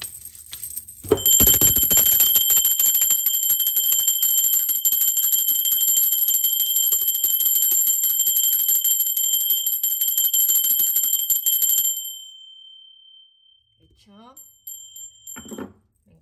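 Small brass hand bell shaken continuously, its clapper striking rapidly to give a loud, high, steady ring for about ten seconds. Then the shaking stops and the ring fades, with one tone lingering a few seconds before it stops.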